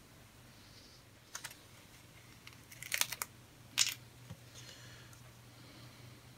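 Small, crisp clicks and crackles from handling a plastic model kit's sticker sheet and parts: a single tap about a second and a half in, a quick cluster around three seconds, and one more just before four seconds.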